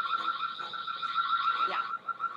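Ring Spotlight Cam's built-in security siren sounding after being set off from the Ring phone app: a steady, high-pitched electronic tone with a rapid warble.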